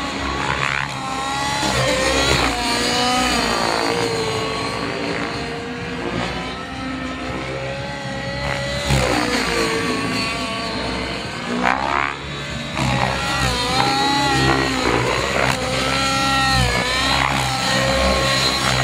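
Radio-controlled helicopter's motor and rotors running hard through aerobatics, the whine rising and falling in pitch again and again as the blades are loaded and unloaded.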